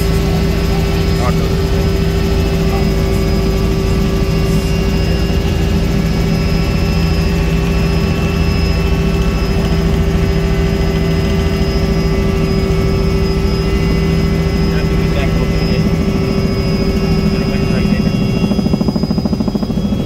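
A helicopter's engine and rotor heard from inside the cabin in flight: a steady drone with a constant whine over a low rumble.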